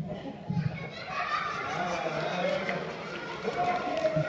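Many children's voices talking over one another, swelling about a second in, in a large hall.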